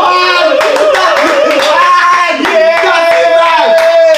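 A small group of people screaming and cheering in celebration, with hands clapping. The voices waver at first, then hold a long cry near the end.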